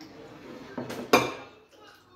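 Two sharp clinks on a ceramic bowl a little under a second apart, about a second in, the second louder with a short ring, as a hand reaches into the bowl of soup.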